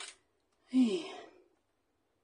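A woman's short sigh, falling in pitch, about a second in, after a brief rustle at the very start.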